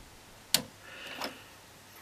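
A sharp single click about half a second in, then a softer cluster of clicks about a second in: the detented rotary switch knobs of an analogue oscilloscope being turned by hand.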